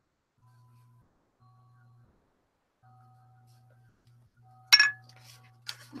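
A single sharp clink with a brief ring about three-quarters of the way in: a hard object struck against something hard on the worktable. A few faint rustles of handling follow near the end.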